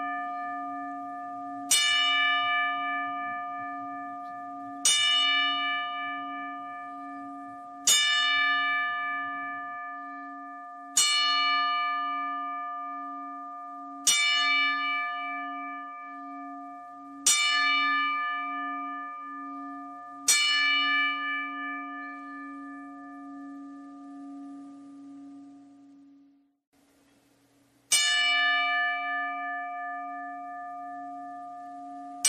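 A bell struck again and again in a ten-bell salute, the wrestling tribute to the dead. Eight strikes fall here, about every three seconds. Each rings on with a clear, steady tone and fades under the next, and after a longer pause the ringing dies away almost to silence before a last strike near the end.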